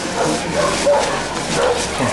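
A dog barking a few times in short bursts.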